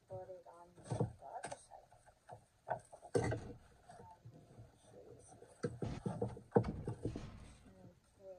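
Stiff paper gift bag rustling, with short taps and knocks as it is handled and ribbon handles are threaded through its punched holes. The loudest knock comes about six and a half seconds in.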